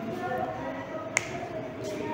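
A single sharp click about a second in, over low room noise and faint distant voices.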